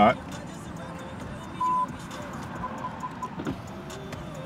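Electronic beeping: one beep lasting about a quarter second, then about a second later four short, quicker beeps at the same pitch, over a low, steady background.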